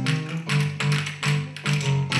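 Pairs of wooden folk spoons (lozhki) clacked together in rhythm by an ensemble, two or three sharp clacks a second, over accompanying music with a steady bass line.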